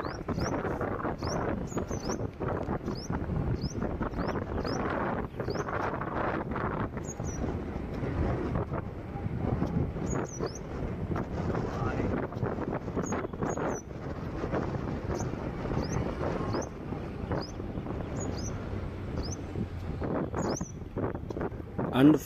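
Wind buffeting the microphone and road noise of a moving two-wheeler, a steady rush with uneven gusts, with short faint high chirps recurring throughout.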